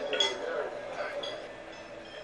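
A few light clinks of glassware and dishes over a low murmur of voices, typical of a dinner reception, from a film soundtrack.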